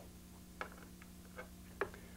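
Three faint clicks from handling a handheld Optoelectronics frequency counter as it is switched on, over a steady low electrical hum.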